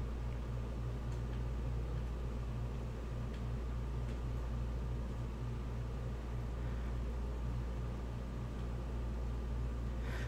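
Steady low hum with a faint hiss, even throughout, from running machinery or electronics.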